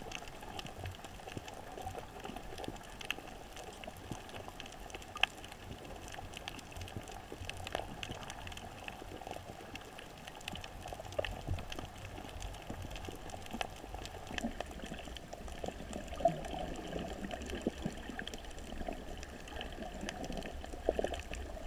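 Underwater ambience heard by a camera below the surface: a steady muffled water noise with many faint scattered clicks and crackles, a few of them sharper.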